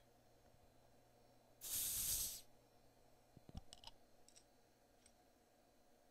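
Dogfish Head 60 Minute IPA being opened: a short hiss of carbonation escaping lasts just under a second, about a second and a half in. A few light clicks follow.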